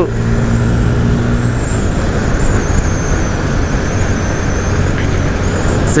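Honda CB300 single-cylinder motorcycle riding at road speed, with wind rushing over the microphone. The engine's steady note fades under the wind noise after about a second and a half.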